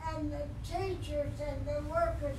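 A person speaking at a fairly high pitch, over a steady low hum.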